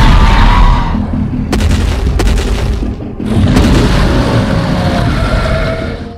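Loud cinematic sound effects for a giant dinosaur: deep booms under a drawn-out roar with a gliding pitch. It comes in two long swells, the second starting about three seconds in.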